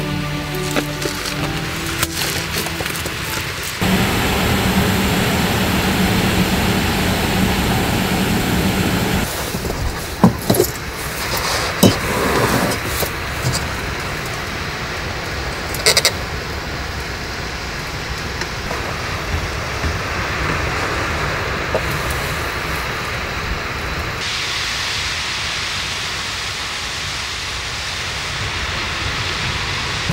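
Background music over camp-cooking sounds: a small gas canister stove burning under a pot and hot water poured from a kettle, with a few sharp clinks of cookware around the middle.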